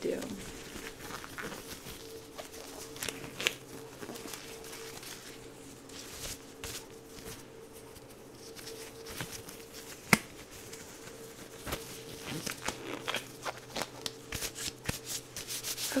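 Blue nitrile exam gloves being handled and pulled on close to the microphone: irregular crinkling, rustling and sharp snaps of the thin glove material, the loudest snap about ten seconds in. A steady low hum runs underneath.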